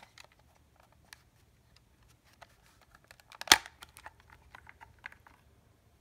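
Plastic battery-compartment cover of a Seiko ST1000 chromatic tuner being pried open by hand: light scattered clicks and scrapes, one sharp snap as the cover comes free about halfway through, then a run of small plastic clicks.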